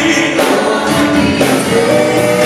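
Live gospel music: a vocal group singing together with band accompaniment, several voices holding sustained notes.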